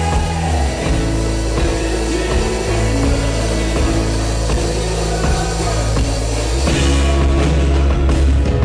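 Rock band playing a song live, with electric guitar, keyboard synthesizer and drum kit over a heavy bass line. About seven seconds in, the band grows louder and fuller.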